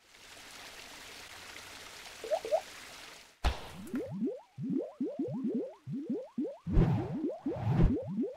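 Animated logo sting sound effects: a steady hissing whoosh for about three seconds, then a sudden hit and a quick run of short rising bloops, with a few low thumps near the end.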